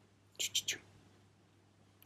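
A woman's brief whispered hiss, three short breathy bursts about half a second in, coaxing a cat to the toy; the rest is quiet room hum.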